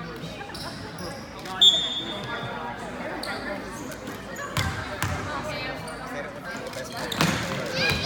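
A basketball bounces on a hardwood gym floor in a few separate thuds, under the chatter of voices in a large gymnasium. A short, loud, high squeak comes about one and a half seconds in.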